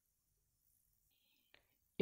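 Near silence: room tone, with one faint short click about one and a half seconds in.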